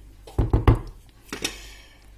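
A wooden spoon stirring a thick sauce in a pan and knocking against the pan, a quick cluster of knocks about half a second in and a lighter one about a second later.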